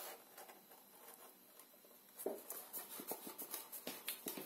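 Faint handling of card and paper. It is almost quiet for about two seconds, then light taps and rustles as a paper flower is pressed onto a card box.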